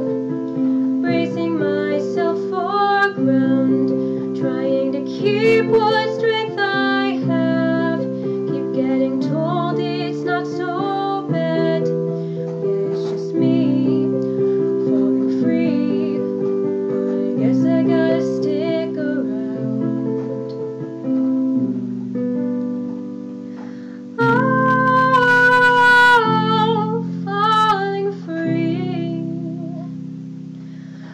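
Acoustic guitar music: chords changing every second or two, with a high, wavering melody line above them that swells louder for a few seconds near the end.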